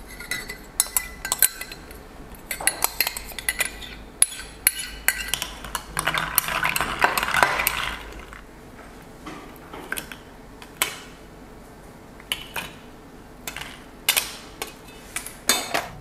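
Long metal spoon stirring iced coffee in a tall drinking glass, clinking against the glass and ice cubes in scattered runs of sharp clinks, with a continuous stretch of stirring about halfway through.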